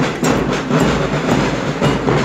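Loud, dense procession drumming with a steady clattering beat.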